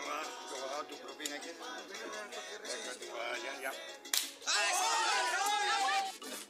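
A sharp slap about four seconds in, amid overlapping talk from several people. It is followed by a louder, sustained sound with a held pitch that lasts until the scene cuts.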